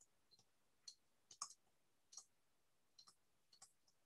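Near silence broken by about five faint, short clicks, spaced irregularly: a stylus tapping on a pen tablet while words are handwritten.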